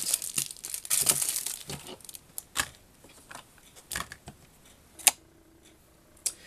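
Plastic cosmetic tubes and sample packets being handled and piled together on a tabletop: crinkling of plastic packaging in short bursts, with a few light knocks and a sharper click about five seconds in.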